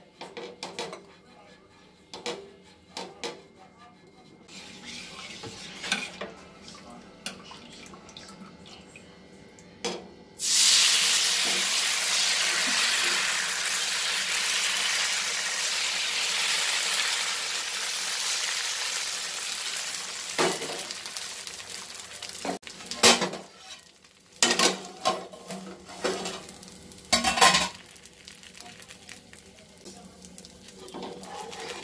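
Thin rice batter for neer dosa hitting a hot, oiled dosa pan: a loud sizzle starts suddenly about ten seconds in and fades slowly over the next ten seconds. Light taps come before it, and sharp clinks and knocks of utensils against the pan come after.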